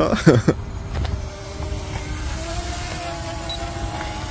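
RG101Pro GPS quadcopter drone's motors humming in flight, the pitch rising slightly about halfway through, over low wind rumble on the microphone.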